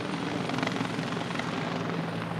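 Steady drone of aircraft engines flying over.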